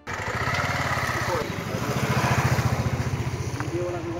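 A motor vehicle engine running close by with a fast, even pulse, a little louder around the middle, with voices faintly over it.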